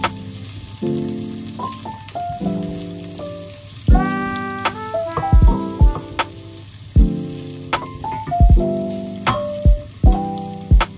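Background music with a melody and a bass-drum beat is the loudest thing. Under it, sliced red onions sizzle steadily in hot oil in a frying pan.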